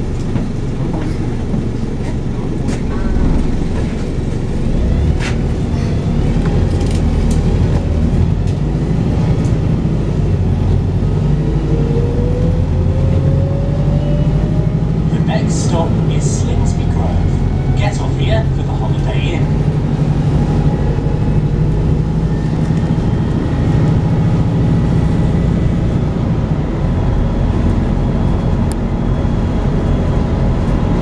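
Volvo B5TL double-decker bus's four-cylinder diesel engine pulling steadily as the bus drives along, heard from inside the cabin with road rumble. A few short rattles from the bus interior sound about halfway through.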